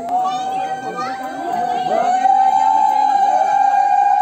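Many voices, adults and children, talking over one long, steady high-pitched tone. The tone is held throughout and grows louder about two seconds in.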